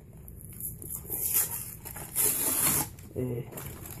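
Rustling and scraping of a cardboard lure package being handled, in two short bursts. A brief murmur of voice comes near the end.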